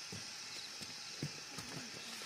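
Hoes and planting sticks striking stony hillside soil while digging holes to plant corn: irregular dull knocks, about three a second, the loudest a little past a second in. A steady high hiss runs underneath.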